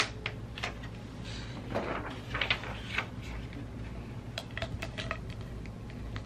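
Thin plastic screen-protector film being handled and peeled over a tablet's glass: crinkling and rustling of the film, with a sharp click at the start and a quick run of small clicks and taps a little past the middle.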